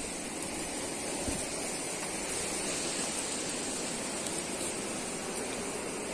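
Steady outdoor background noise: an even hiss with a constant high-pitched band running through it, and one faint soft knock about a second in.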